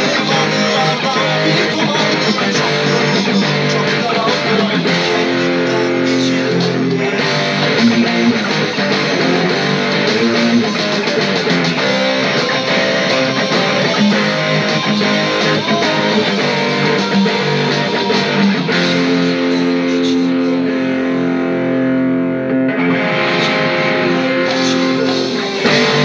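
Cort solid-body electric guitar playing a rock song over a full band backing track, with several long held notes near the end.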